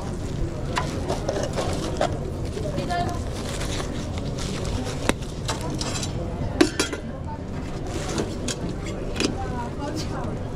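Busy commercial kitchen background: a steady low hum with faint chatter, and a few sharp clicks and plastic rustles as a plastic salad container, a plastic bag and disposable gloves are handled, the loudest click coming past the middle.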